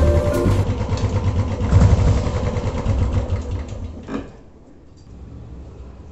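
Royal Enfield Bullet's single-cylinder engine running just after a kickstart, its first start after sitting for over a month, swelling and falling in loudness for about four seconds. Then comes a click and the engine sound drops to a much quieter, steady low rumble.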